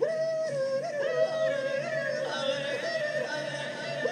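A voice yodeling: long held notes that jump up and down between pitches, played back through a television speaker.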